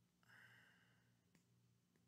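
Near silence with a faint steady low hum, and a soft breath out through the nose about a quarter of a second in, lasting under a second.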